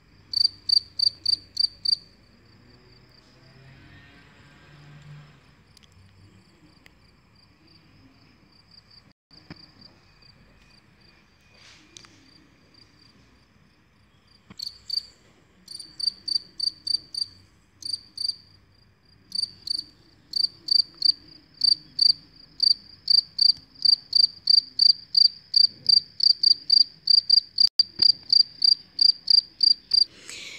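Male field cricket (Gryllus campestris) singing its calling song, made by rubbing its forewings together: loud, high-pitched chirps at about three a second. For roughly twelve seconds after the start the chirping gives way to a faint, soft song, then resumes and keeps up steadily to the end.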